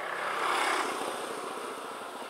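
Motor vehicle noise on a street, a steady hiss that swells briefly about half a second in and then fades.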